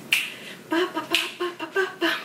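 Two sharp snaps, one at the start and one about a second in, while a woman dances. From the middle on, short repeated voiced notes in a quick rhythm, about five a second, as she hums or sings along.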